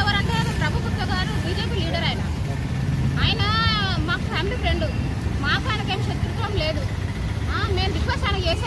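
A woman speaking in Telugu, over a steady low background rumble.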